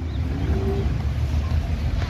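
Steady low rumble of town street traffic.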